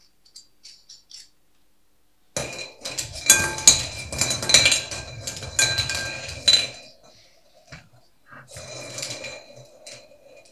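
Draw balls rattling and clinking against a glass bowl as a hand stirs them to mix them before the draw: a dense clatter with a glassy ring lasting about four seconds, then a shorter, quieter stir near the end.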